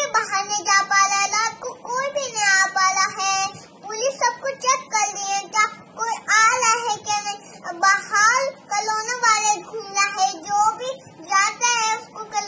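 A young girl's high voice reciting a prayer in a sing-song chant, phrase after phrase with brief pauses between them.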